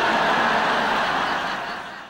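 Audience laughter breaking out right after a punchline, steady and then fading away near the end.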